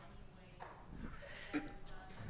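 Faint, distant voice of an audience member speaking off-microphone in a hall, with one brief knock about one and a half seconds in.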